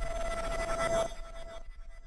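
Fading tail of a logo-intro sound effect: a steady electronic ringing tone with overtones dies away, dropping off sharply about a second in.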